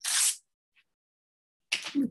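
Paper tearing once: a short rip, under half a second, as a magazine page is pulled against the edge of a cutting mat to tear it straight.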